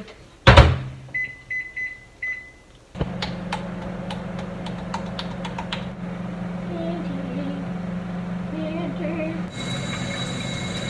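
A microwave oven is shut with a loud thump, then its keypad gives about five short beeps, and from about three seconds in the microwave runs with a steady electrical hum, with a few light clicks early in the run.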